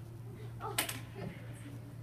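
Quiet classroom murmur of children's voices, broken a little under a second in by a single sharp click or knock, over a steady low hum.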